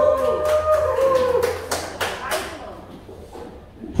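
A long drawn-out vocal call from the audience in the first second, with a few scattered hand claps over the next couple of seconds before it quiets down.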